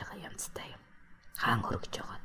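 Quiet, partly whispered speech: soft hissy breaths and a short stretch of voiced talk about a second and a half in.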